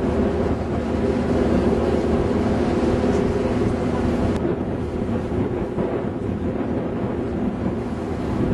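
A boat's engine running steadily underway, a constant low drone, with wind buffeting the microphone.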